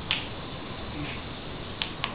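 Two hollow-seed spinning tops humming steadily as they spin, a sound likened to an airplane. Two sharp clacks, just after the start and near the end, as the tops knock against each other.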